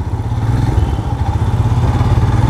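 Royal Enfield Scram 411's single-cylinder engine running at low speed while the bike is ridden slowly through a tight turn, a steady low engine note with a fast even pulse that picks up slightly in the first half second.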